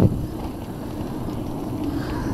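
Steady low rumbling noise of wind buffeting the camera's microphone as it whirls round on a spinning playground roundabout.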